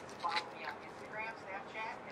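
Faint, soft speech: quiet voices murmuring between louder remarks, with no other distinct sound.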